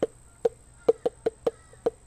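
A person clicking their tongue over and over, about four sharp clicks a second at uneven spacing, a noise directed at the giraffes and called annoying as hell.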